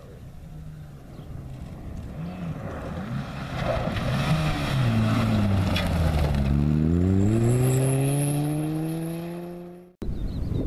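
Ford Focus rally car approaching on a gravel stage, its engine note rising and falling as the throttle is worked, then sliding past with gravel spraying about five seconds in. It then accelerates away with the engine pitch rising steadily until the sound cuts off suddenly.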